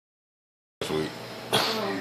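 A person's voice: a short vocal sound a little under a second in, then a cough about halfway through, trailing off into a falling voiced sound.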